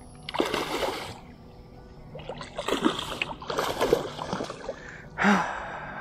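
A big hooked snook thrashing and splashing at the surface close to the boat, in about four separate bursts, with a man's sigh and heavy breathing.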